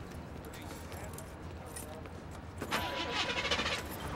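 Car being started from inside the cabin: a low steady rumble, then about two-thirds of the way through a quick run of small rattles as keys jangle at the ignition and the engine starts.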